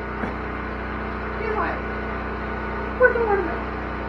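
Steady low hum of a running generator that powers the cabin's lights and coffee maker, with faint voices over it twice.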